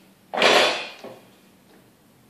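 A single sudden metallic clatter about a third of a second in, dying away over roughly half a second, as metal is knocked against the steel workbench.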